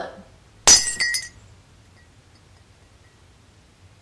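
A glass breaking: one sharp crash with ringing high tones well under a second in, followed by two smaller clinks of pieces, all over within about a second.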